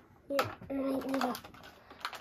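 A person's short wordless vocal sound, low and held on a few steady pitches, starting just after a sharp click about a third of a second in.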